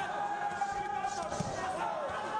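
Ringside sound of an amateur boxing bout in a hall: voices calling out around the ring, with a dull thud from the action in the ring about a second and a half in.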